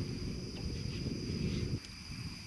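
Night insects, crickets, trilling in a steady high continuous tone, over a low rumble that drops away near the end.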